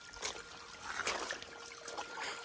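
Shallow creek water trickling over rocks, with a few faint scuffs or splashes of footsteps in the wet creek bed.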